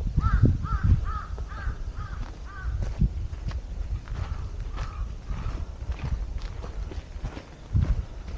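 Walking footsteps thudding on a dirt forest trail. A bird gives a quick run of about seven harsh, arching calls in the first three seconds, and a few fainter calls follow a little later.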